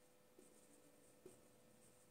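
Near silence, with the faint strokes and taps of a marker writing on a whiteboard and a faint steady hum.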